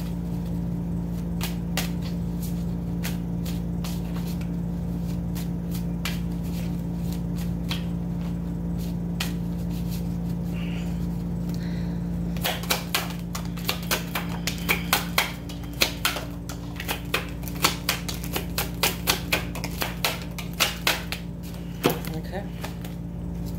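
Deck of tarot cards being shuffled by hand: scattered soft card clicks for the first half, then a quick run of sharp card snaps from about halfway through to the end. A steady low hum runs underneath.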